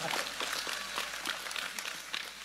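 Audience applause: light, scattered hand clapping from a crowd, fading slightly toward the end.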